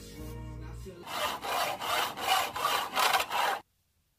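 A marker drawn along EVA foam in quick repeated strokes, a steady run of rubbing about three times a second that starts about a second in and stops abruptly shortly before the end.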